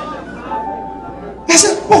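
A man preaching in a large hall: a brief pause with room echo and a faint steady tone, then his voice comes back in loud and sharp about one and a half seconds in.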